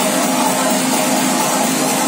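Loud dance music from a DJ set over club speakers, here a steady noisy wash with a few sustained tones, little bass and no clear beat.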